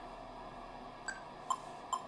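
Metronome clicking a steady count, about two and a half clicks a second, starting about a second in; the first click is higher-pitched than the next two.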